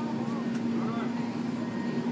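Steady low hum of an Airbus A380's cabin air and ventilation system while the aircraft is on the ground, with a few faint voices of other passengers.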